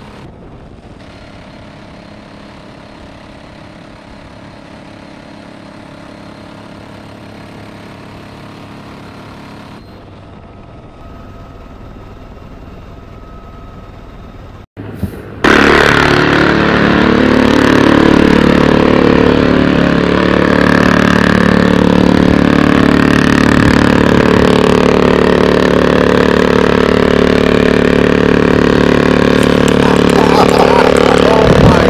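UH-1Y Venom helicopter's twin turboshaft engines and rotor running steadily, heard from on board at the door-gun position. About halfway through, the sound cuts out briefly, then returns much louder and more forceful as the helicopter flies close by.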